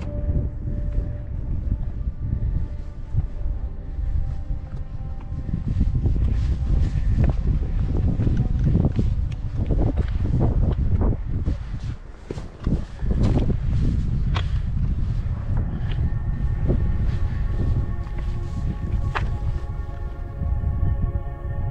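Wind buffeting the camera microphone on an exposed rocky ridge, with irregular footsteps on loose rock.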